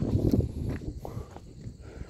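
Footsteps of a person walking on a paved road, over a steady low rumble on the microphone.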